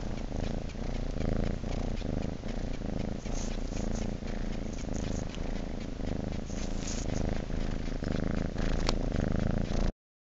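Domestic cat purring steadily and continuously, cut off suddenly just before the end.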